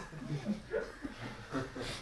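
A man's faint vocal sounds, a quiet breath and low mumble, in a small room between sentences.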